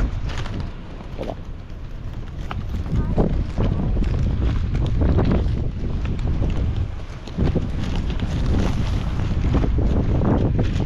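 Wind buffeting the microphone in a steady low rumble, with scattered short clicks and rustles of handling throughout.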